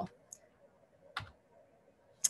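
Two faint computer clicks about a second apart, the second the sharper, as the presentation slide is advanced, over quiet room tone.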